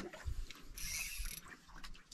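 Daiwa Saltiga conventional jigging reel being cranked, its gears making a light mechanical whir with small clicks. The sound is strongest a little under a second in.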